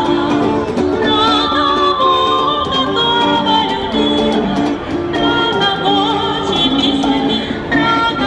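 Live street-band music: a woman singing long, wavering held notes over amplified electric guitars.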